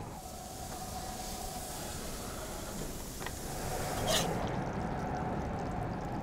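Hot oil sizzling in a cast-iron skillet as sandwiches shallow-fry in the pizza oven, a steady hiss. There is a small click about three seconds in and a brief sharper high sound just after four seconds.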